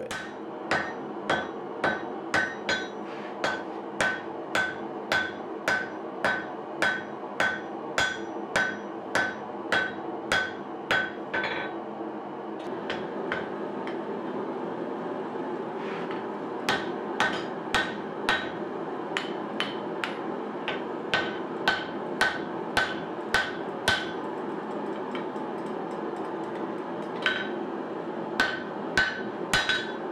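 Hand hammer striking red-hot steel on an anvil as the axe head's blade is shaped. The blows come a little under two a second, each with a short metallic ring, in three runs with two pauses of a few seconds, over a steady background noise.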